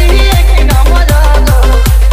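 Odia DJ remix music with a hard bass kick drum, about two and a half beats a second, under a synth melody.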